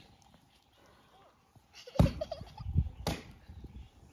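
Cast iron wok knocked against the dirt ground to shake out burnt wheat-straw ash: two sharp knocks, about two seconds in and a second later, the first the loudest. The ash is sticking and won't knock out.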